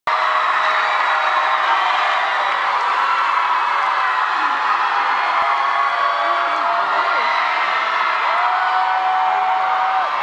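Theatre audience cheering, screaming and whooping as a dance team takes the stage, many voices at once, loud and steady, with a few long held shrieks in the second half.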